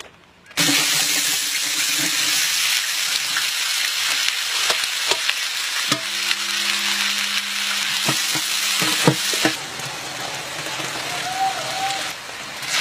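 Sliced red onions frying in hot oil in a large metal cooking pot: a loud, steady sizzle that starts suddenly about half a second in and eases a little near the end, with a few sharp clicks.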